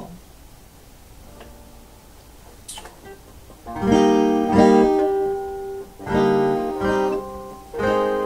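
Acoustic guitar: a few faint notes and a click, then chords strummed from about three and a half seconds in, struck again roughly once a second and left to ring.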